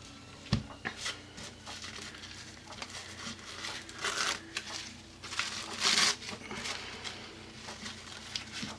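Thin tissue paper, wet with Mod Podge, crinkling and rustling as it is pressed and brushed down around the edge of a board, with soft tearing as the fragile paper gives way. Louder rustles come about four and six seconds in.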